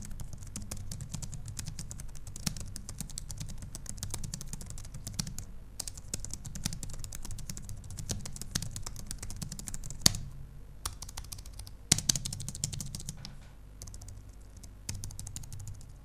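Fast continuous typing on a Logitech MX Keys low-profile membrane keyboard with chiclet keys: a dense run of quiet keystrokes with a few short pauses and a couple of louder strokes about ten and twelve seconds in.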